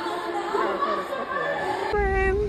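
A voice talking over an arena's public-address system, echoing in the hall, with crowd chatter underneath.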